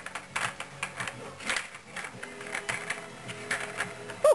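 Irregular light clicks and rattles of kittens batting and knocking a plastic ball-track cat toy around on a tile floor.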